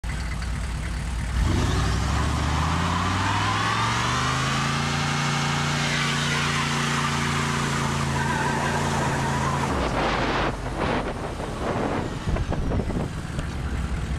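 A 1995 Chevrolet K1500 pickup's engine revs up and holds high during a burnout, with the spinning rear tire squealing over it. The engine sound drops off suddenly about ten seconds in, and uneven rumbling and crackle follow.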